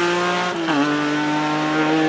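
Historic rally car engine pulling hard under acceleration. The pitch climbs steadily, drops sharply at a quick upshift just over half a second in, then holds and climbs again.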